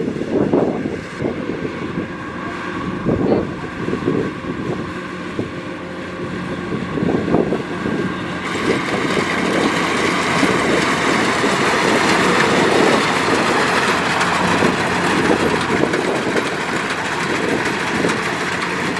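Kubota DC-105X rice combine harvester running as it harvests, a steady diesel engine drone with the machine's mechanical noise. About halfway through the sound turns fuller and brighter as the harvester comes close.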